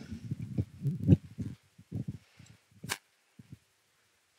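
Low, muffled thumps and rumbles for about two seconds, then a few scattered knocks and one sharp click about three seconds in, after which it goes quiet.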